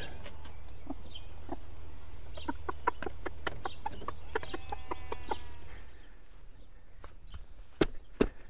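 Broody chicken hen clucking in a run of short repeated notes, with faint high peeps from her Temminck's tragopan chicks. The clucking stops about two-thirds of the way through.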